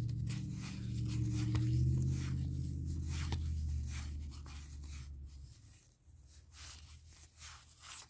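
Cardboard baseball cards being slid and flipped one by one off a hand-held stack, a run of quick, soft paper scrapes and flicks. A low hum sits under it for the first five seconds or so, then fades away.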